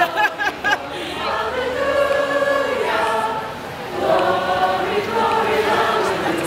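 A group of voices singing together in long, drawn-out notes, with street chatter underneath.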